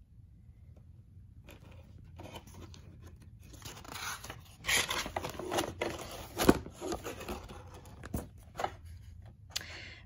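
Pages of a picture book being turned and smoothed by hand: paper rustling and scraping, starting after a second or so of quiet, with a couple of sharp taps in the second half.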